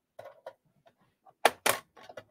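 A few faint clicks, then two sharp, louder clicks close together near the end: small objects or keys being handled on a desk.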